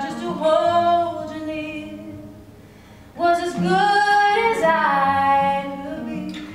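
Women's voices singing long held notes in harmony: one phrase that fades away over the first two seconds, then a second, louder phrase swelling in about three seconds in.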